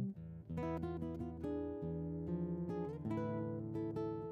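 Quiet instrumental acoustic guitar music, a run of plucked notes and chords.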